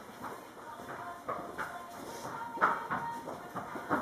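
Faint, irregular rustling and soft handling sounds of hands twisting and pulling a horse's thick mane hair into a French braid.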